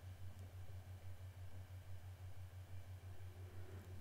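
Very quiet room tone: a faint steady low hum under light hiss, with no distinct event.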